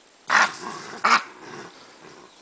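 Chacma baboon giving two loud, harsh calls about three-quarters of a second apart, aggressive vocalising in a squabble over a bushbuck kill.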